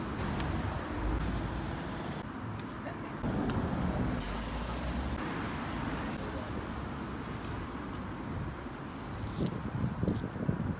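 Outdoor street ambience: a steady traffic rumble with low, indistinct voices. A few brief rustles come from the paper poster being handled against the hoarding, and someone says "thank you" at the very end.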